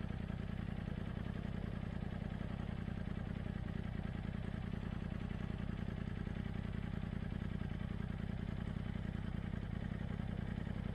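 Side-by-side UTV engine idling steadily, a low, even running sound that holds at one pitch without revving.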